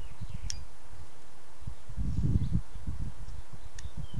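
Carving knife cutting into a small hand-held wood figure: low handling bumps, strongest about two seconds in, and two short sharp clicks, one near the start and one near the end.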